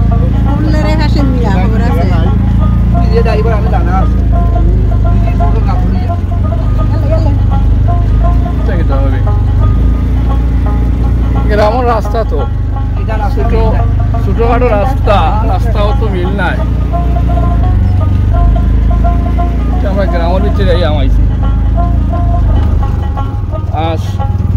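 Steady low rumble of an auto-rickshaw's engine, heard from inside the passenger compartment as it drives along. A person's voice breaks in over it several times.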